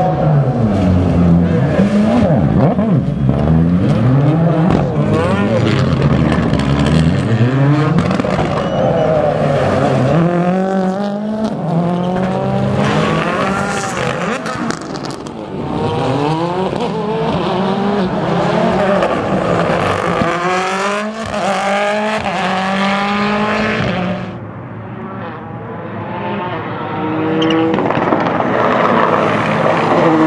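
Rally car engines revving hard through the gears, the pitch climbing and dropping back with each shift as the cars race round a tarmac circuit stage. About three-quarters of the way through the sound turns duller and quieter for a moment, then builds again with the next car.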